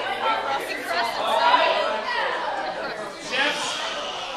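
Several people talking at once in a large room: overlapping, unclear chatter with no single voice standing out.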